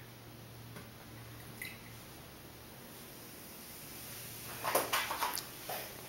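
Quiet room tone, then a short cluster of small clicks and knocks near the end from small objects being handled on the counter.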